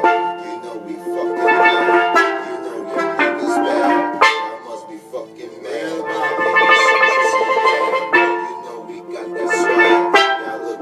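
Steelpan struck with sticks, playing phrases of bright, ringing pitched notes, with a short lull about halfway.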